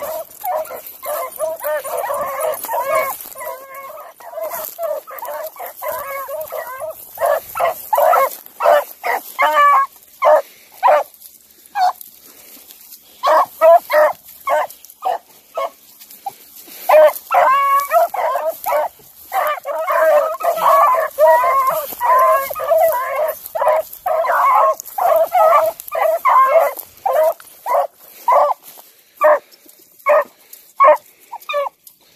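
A pack of beagles baying on a scent trail, several voices overlapping in runs of repeated calls. There is a brief lull a little before halfway.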